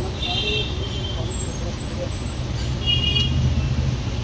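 Steady low street-traffic rumble, with short high-pitched tones twice, once near the start and once about three seconds in.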